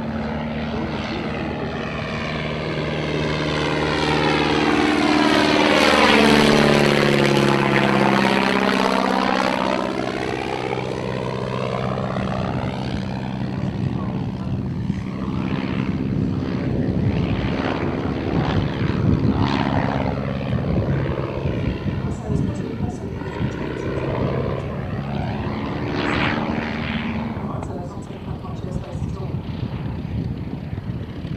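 De Havilland Tiger Moth biplane's four-cylinder inverted inline engine and propeller in flight, growing louder to a peak about six seconds in and then easing as it passes. The engine note then rises and falls through the rest of its aerobatic display.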